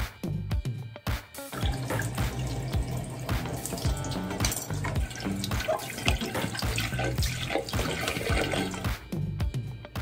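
Tap water running into a sink and splashing over a plastic paint palette as it is rinsed, starting about a second in and stopping near the end, with background music throughout.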